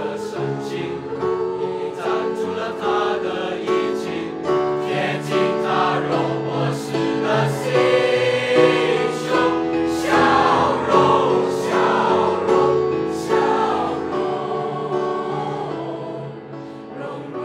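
Mixed-voice school choir of girls and boys singing a Chinese art song in harmony, with long held chords that swell louder in the middle and soften toward the end.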